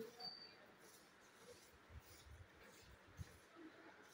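Near silence: faint room tone with a few soft low thumps and one brief, thin, high chirp about half a second in.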